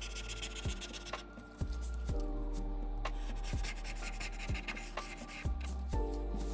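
Hobby knife blade (number 17 Exacto) scraping old adhesive off the iPad's metal frame, a dry scratching with occasional clicks, over soft background music with held tones.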